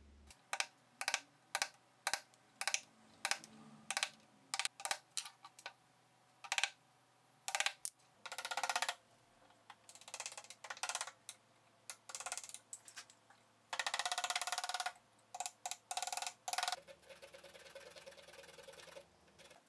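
A series of sharp wooden knocks: a wooden mallet striking a carving chisel into a small wooden part held in a jig. In the second half come several rasping strokes of about a second each, the tool cutting or scraping the wood.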